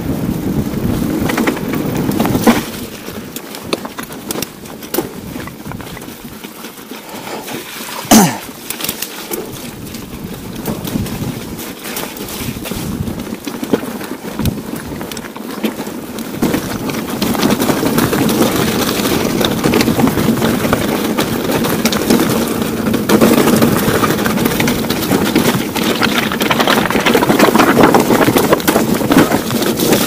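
Steel hardtail mountain bike rolling over rock and gravel: tyre noise with rattles and knocks from the bike, and a sharp knock about eight seconds in. The noise grows louder and denser about halfway through, as the trail gets rougher.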